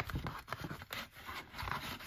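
Card and paper scraping and rustling as printed cards are slid out of a card envelope by hand, an uneven run of small rubs and clicks.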